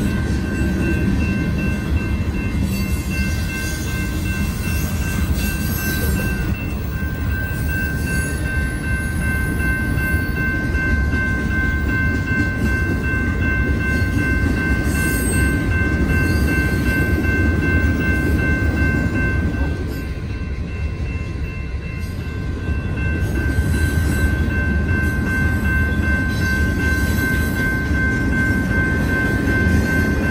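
Freight train of tank cars and boxcars rolling through a grade crossing, a steady rumble and clatter of cars passing that eases briefly about two-thirds of the way in. Steady high ringing tones sound over it throughout, fitting the crossing's warning bell.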